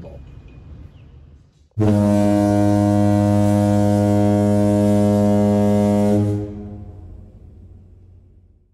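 One long, low horn blast, a foghorn-style sound effect. It starts suddenly about two seconds in, holds one steady deep pitch for about four and a half seconds, then fades out.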